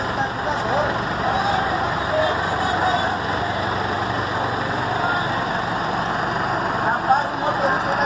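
City bus diesel engine running steadily close by as the bus moves past, with voices chattering in the background.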